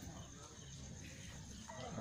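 Faint background noise in a short pause between spoken lines, with a voice starting again near the end.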